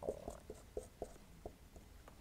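Marker pen writing on a whiteboard: a run of faint, short strokes and taps a few tenths of a second apart as each character is written.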